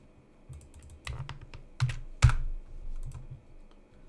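Computer keyboard keys and mouse clicks: a handful of separate taps, each with a dull knock, the loudest a little past halfway through.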